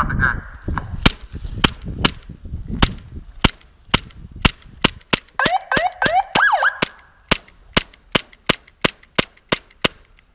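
Glock 17 gas blowback airsoft pistol fired repeatedly: a long string of sharp cracks, roughly two a second, from about a second in until near the end. A short wavering tone is heard about halfway through.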